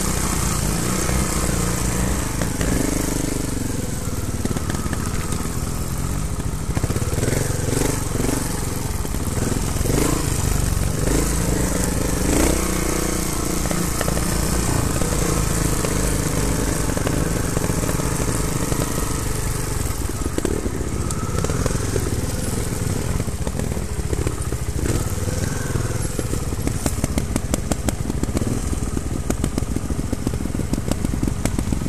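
Trials motorcycle engine being ridden at low speed over a rough forest trail, its revs rising and falling with the throttle. Near the end it drops to a slow, even putter at low revs.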